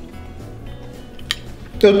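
Soft background music with a single short clink, a metal spoon touching a small ceramic bowl, about a second and a half in.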